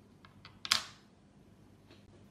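A small hard modelling tool handled on the sugarcraft work board: a few light ticks, then one sharp clack about three-quarters of a second in.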